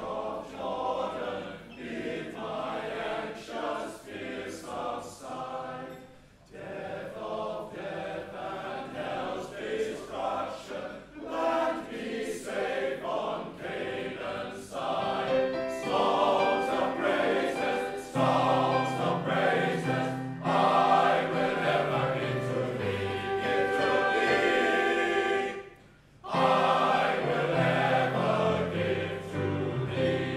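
Welsh male voice choir singing in full harmony, one phrase after another, with short breaks between phrases about six seconds in and again near the end. The singing swells and grows louder from about halfway through.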